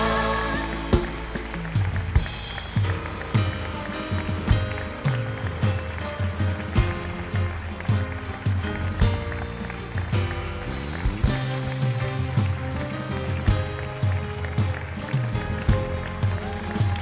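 Instrumental music with a steady drum beat under held chords. It follows the fading last note of a sung gospel chorus.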